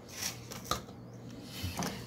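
A metal spatula scraping and gathering dried coarse sea salt and orange zest on a sheet pan: faint scraping with a few light clicks.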